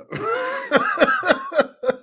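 A man laughing hard: a breathy start, then a run of about five short bursts, each falling in pitch.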